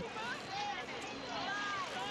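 Faint, indistinct voices calling over a steady background hiss of wind and water.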